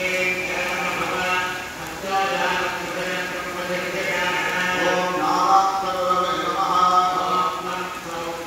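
A man's voice chanting Hindu mantras in long, drawn-out tones, with a steady low hum underneath.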